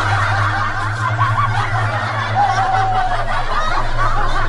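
Laughter: overlapping snickering and chuckling, over a steady low hum.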